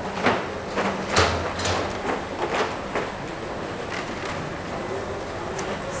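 Hard plastic chocolate moulds clattering as they are handled and stacked, with several sharp knocks in the first three seconds. A steady hum from factory machinery runs underneath.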